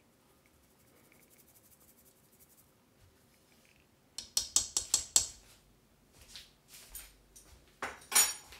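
Near silence, then about four seconds in a quick run of sharp clicks, a utensil against a mixing bowl, followed by a few fainter taps.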